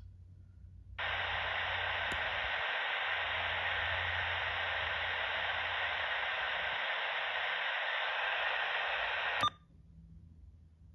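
Uniden BC125AT scanner's speaker hissing with steady radio static for about eight and a half seconds when its squelch opens during a narrowband FM search. The static cuts off suddenly with a click near the end.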